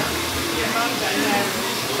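A hair dryer running steadily, with faint voices talking over it.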